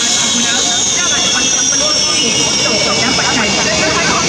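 High-pitched turbine whine of a Sukhoi Su-30MKM's AL-31FP jet engines running on the ground, its pitch slowly falling, with voices in the background.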